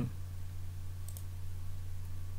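Two faint computer mouse clicks about a second in, over a steady low electrical hum.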